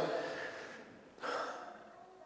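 A man's short, audible intake of breath through the mouth about a second in, between sentences. Before it the last spoken word fades out in the room's reverberation, and after it there is quiet room tone.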